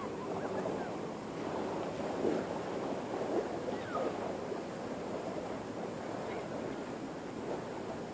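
Riverside ambience dominated by steady wind buffeting the microphone, with faint distant voices now and then.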